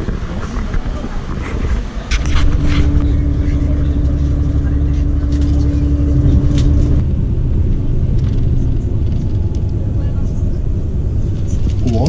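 Outdoor crowd noise with voices for the first couple of seconds, then a loud, steady low rumble of a coach bus engine heard from inside the cabin. A steady hum rides over the rumble for several seconds before fading out.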